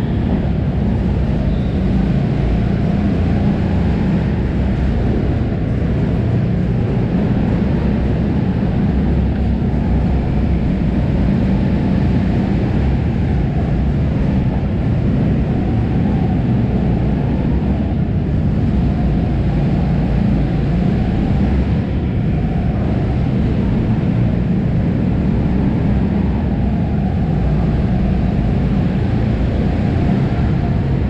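Go-kart engine idling with a steady low rumble, heard from the driver's seat.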